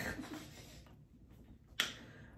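The tail of a soft laugh fades out, then a single sharp click sounds near the end.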